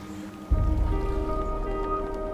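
Soft background music: a held chord of steady tones with a deep low swell coming in about half a second in, under a faint patter of small ticks.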